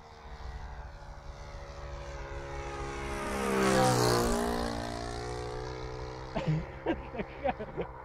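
Saito FA-125 four-stroke glow engine of a large radio-control P-40 model passing overhead. The engine note swells to its loudest about four seconds in, then drops in pitch and fades as the plane goes by.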